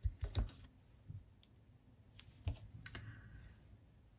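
Light, scattered clicks and taps, about seven in four seconds, from hands pulling and tearing a short strip off a roll of double-sided tear-and-tape adhesive.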